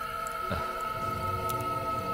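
Background film score of long held, droning synth tones, with one high note sustained throughout and a low swell building from about half a second in.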